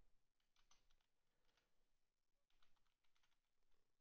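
Faint computer keyboard typing: two short runs of quick keystrokes, with a few more near the end.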